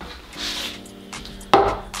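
Background music begins with steady held notes. Over it, a brief rustle comes just after the start, then a sharp knock about one and a half seconds in: a PVC-board knee pad being set down on the wooden workbench.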